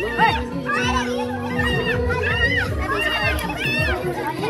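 Dance music with a beat, played over a group of young people shouting and cheering as they dance.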